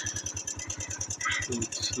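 Motorcycle engine idling with an even low pulse, about a dozen beats a second, under a steady high-pitched buzz.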